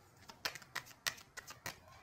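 Tarot cards being shuffled by hand to draw a card: a faint run of light, sharp card clicks, about three a second.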